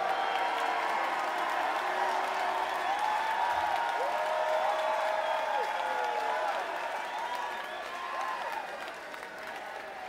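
Concert crowd applauding and cheering, with shouts rising over the clapping; it eases off over the last few seconds.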